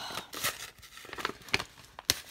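Kraft paper envelope rustling and crinkling in the hands as a card stuck inside is worked loose, with a few short crackles. The card sticks fast, which she suspects is because it is glued in.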